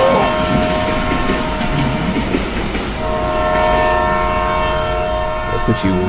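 Sound-effect clip of a passing train: the rumble of the railcars going by, with the train's horn sounding a chord of several notes. The horn stops just after the start and sounds again for about three seconds from halfway in.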